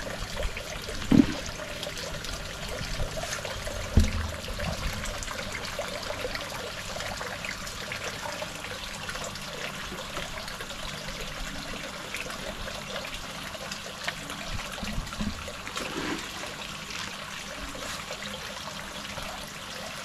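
Water trickling steadily from the aquaponics pipes into the fish pond, with two brief knocks about one and four seconds in.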